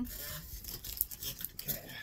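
Handling noise: plastic rustling and rubbing, with a sharp light click about a second in, as a package of Peeps and a plastic water bottle are handled.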